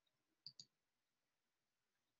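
Two faint, sharp clicks in quick succession, about a tenth of a second apart, from a computer mouse button being double-clicked, against near silence.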